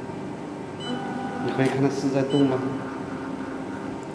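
A person speaking briefly over a steady background hum.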